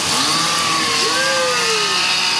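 Chainsaw sound effects from the ride's logging scene, revving up and down several times over the steady rush of river water around the raft.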